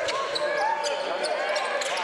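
Basketball dribbled on a hardwood gym court, a few sharp bounces over a steady murmur of crowd voices in a large hall.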